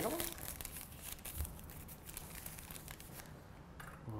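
Light crinkling and rustling of pie crust dough being rolled up onto a wooden rolling pin on the floured counter, a string of small irregular ticks that thins out near the end.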